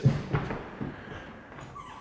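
Two men going down onto a wooden floor in a leg-sweep takedown: a thud as they land, then scuffling of bodies on the floor, with a short squeak near the end.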